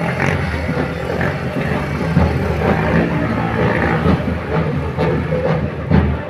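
Loud street-parade noise: a jumble of marchers' voices and footsteps with a vehicle engine running, and band music mixed in.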